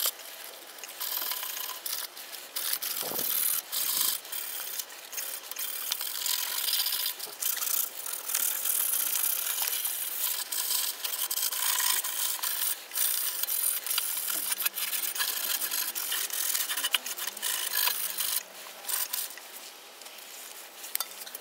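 Wet waterproof sandpaper scrubbed back and forth by hand over a rusty chrome-plated steel motorcycle carrier, a rasping rub that rises and falls with each stroke as it slowly works the rust off. A dull knock about three seconds in.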